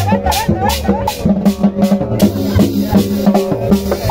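Live cumbia band playing, with congas and drums over a bass line and a melody. A shaker keeps a steady beat of about four strokes a second.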